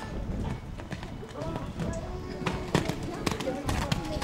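Horse cantering on a wet sand arena, its hoofbeats coming through as a quick run of thuds in the second half as it passes close, over faint background music and voices.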